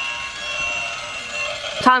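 Toy train running around its plastic track, a steady whir with a faint high whine. A voice cuts in near the end.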